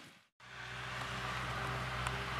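A brief dead silence at an edit cut, then a steady low mechanical hum of a machine running, with outdoor hiss.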